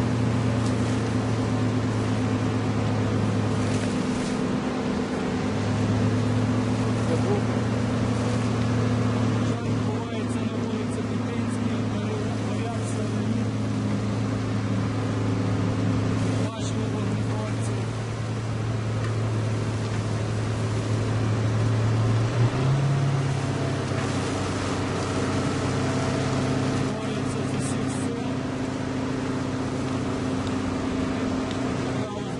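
A fire engine's motor running steadily at pumping speed to feed a hose line, its pitch stepping up about three quarters of the way through.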